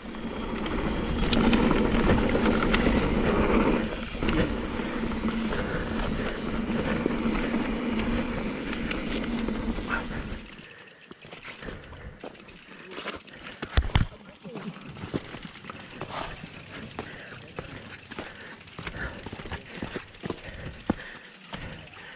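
Mountain bike riding down a rough trail, with wind on the camera and the bike rattling over the ground: loud and continuous for about ten seconds, then quieter with scattered knocks and a sharp clack about fourteen seconds in.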